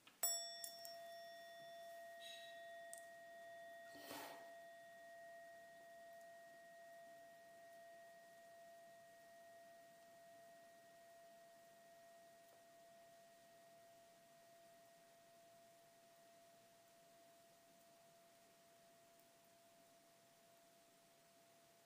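A meditation bell struck once just after the start, ringing one clear tone with a few higher overtones that fades slowly away; it marks the start of the silent breath meditation. A brief soft noise comes about four seconds in.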